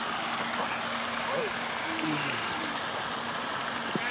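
Steady outdoor background noise with a low, even hum throughout, and faint voices in the distance.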